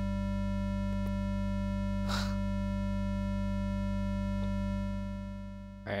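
A held note on a software synthesizer pad, Native Instruments Massive, rich in overtones and sounding steadily with the envelope on hold so it does not end. It fades away over the last second or so. A couple of faint clicks sound partway through.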